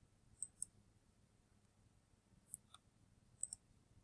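Computer mouse button clicking, three quick pairs of short clicks against near silence: about half a second in, about two and a half seconds in, and near the end.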